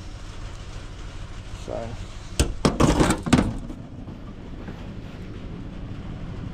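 Several sharp clicks and knocks over about a second as a string trimmer's shaft housing and coupling parts are handled and pulled apart, with a steady low hum underneath.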